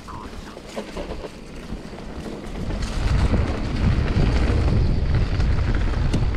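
Wind buffeting the microphone of a GoPro on a mountain bike riding downhill, building to a loud low rumble a few seconds in as the bike picks up speed. A few small knocks from the bike and trail run through it.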